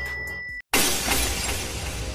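Background music cuts out abruptly just over half a second in, followed by a sudden glass-shattering sound effect that crashes and then fades away.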